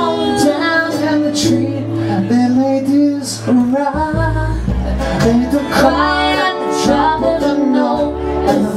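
Live hillbilly-style country band: acoustic guitars strummed over an upright double bass line, with singing.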